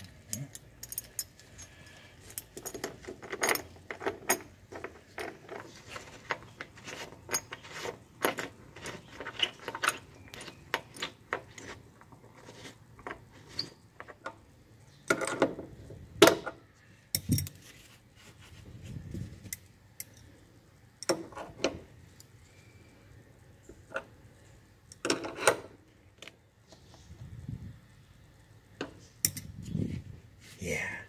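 Seat-belt mounting hardware, a steel bolt, washers and the belt's metal anchor plate, clinking and rattling in irregular clicks as it is handled and threaded in by hand. There are a few louder knocks about halfway through and again near the end.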